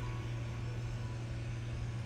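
A steady low hum with faint hiss above it, unchanging throughout, the constant background bed under the guided meditation.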